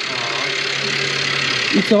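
BMW petrol engine idling steadily just after being started, a low, even hum; it is running after a coding job.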